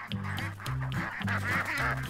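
Background music with a repeating bass line, with ducks quacking over it.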